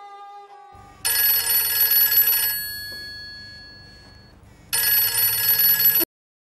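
A telephone bell ringing twice, each ring lasting about a second and a half; the first ring dies away slowly before the second one starts.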